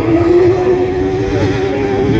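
Engine of an F600 autograss racing buggy running on the dirt track, a steady pitched buzz with a slight waver over a low rumble.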